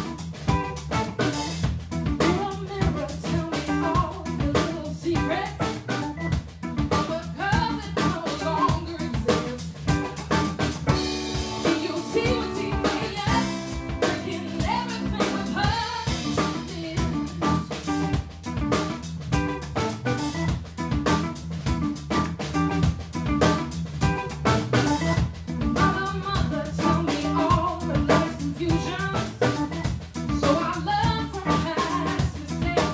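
An organ trio with a woman singing plays live: a drum kit keeps a steady beat with snare and rimshots under electric guitar and organ. About halfway through, the drums thin out for a few seconds of held chords.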